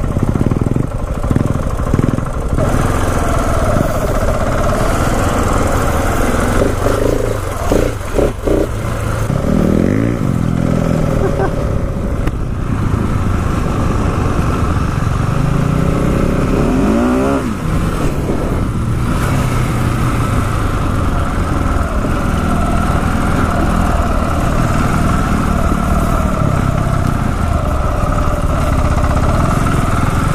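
Single-cylinder engine of a 2016 KTM 690 Enduro R running under way, revving up in two rising sweeps, about ten seconds in and again around seventeen seconds in. Wind rushes on the helmet microphone.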